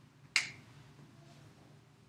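A single short, sharp click about a third of a second in, over faint room tone.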